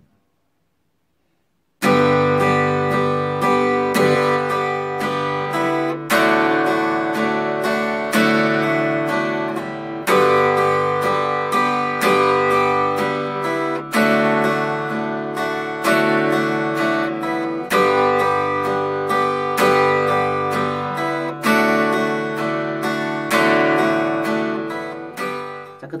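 Acoustic guitar strummed slowly in an even four-beat pattern, switching back and forth between G and D chords every few seconds. It starts about two seconds in.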